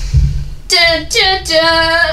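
A person singing a short unaccompanied phrase of three notes, the last one held steady.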